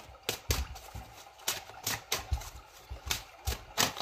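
Tarot cards being handled at a table, pulled from the deck and flipped: a string of about ten irregular sharp taps and flicks.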